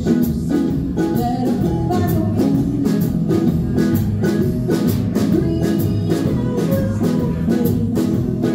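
Small live band playing a song: ukulele, electric guitar, upright bass and drum kit, with drums keeping a steady beat.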